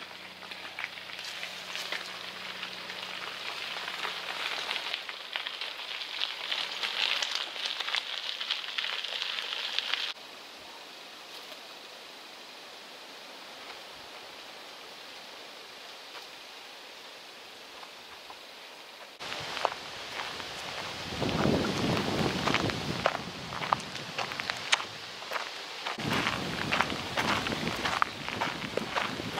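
Outdoor crackling rustle of leaves and undergrowth with many small ticks, then a steady quieter hiss, then louder irregular crunching steps on a gravel track; the sound changes abruptly twice, about ten and nineteen seconds in.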